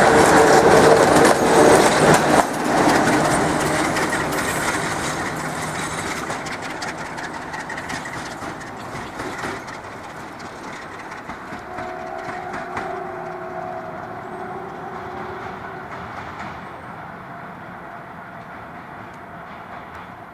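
Romanian class 60 Sulzer-engined diesel-electric locomotive running light, passing close with wheels clicking over the rail joints. Its engine and wheel noise then fade steadily as it moves away.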